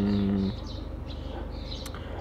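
A man's short, steady hum at one pitch, then faint, scattered chirps of small birds in the garden and a single light click near the end.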